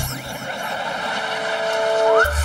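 A rushing whoosh sound effect that slowly grows louder, with a steady held tone joining about two-thirds of the way in and a rising glide at the very end.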